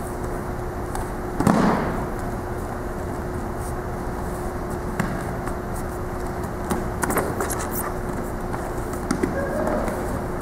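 Bodies of aikido practitioners hitting a wrestling mat as they are thrown and take breakfalls. One heavy slap-thud about a second and a half in, then lighter knocks and footfalls on the mat, over a steady hum in a large echoing gym.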